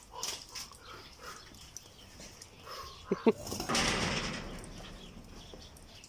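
An animal's sounds: two brief calls just after three seconds, then a breathy sound lasting about a second and a half, with faint clicks and knocks around them.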